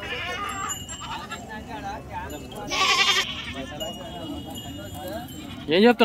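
Crowd of men talking in the background at a busy livestock market, with a short loud call about three seconds in and a loud close voice near the end.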